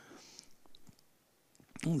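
A few faint computer mouse clicks in a pause of speech, as the Move command is picked in the CAD program; a man's voice starts again near the end.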